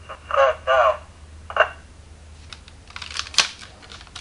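DX Signaizer toy blaster playing an electronic sound through its speaker: two short warbling bursts, followed by a single click about halfway through. Near the end comes a clatter of hard plastic as the toy is handled.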